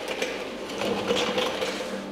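Fast, fine mechanical rattling made of many small clicks, with a faint steady hum beneath it.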